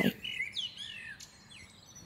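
Birds chirping faintly: a few short whistled notes that slide in pitch, mostly in the first second.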